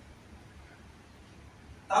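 A pause in a man's speech at a microphone: faint, even room noise. Then his voice starts again just before the end.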